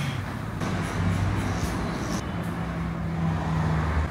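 A steady low motor hum whose pitch steps up about halfway through.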